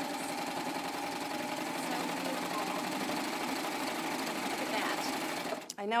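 Serger running steadily at sewing speed, stitching a fabric bias strip through a bias-binding attachment. It stops shortly before the end.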